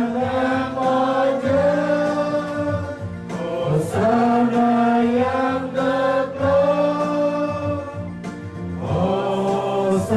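Small mixed youth choir singing a hymn together in long, held phrases, accompanied by an electronic keyboard, with short breaks between phrases about three seconds in and near the ninth second.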